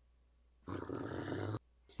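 A man's voice growling 'grrrr' in anger, one low growl of about a second starting a little under a second in.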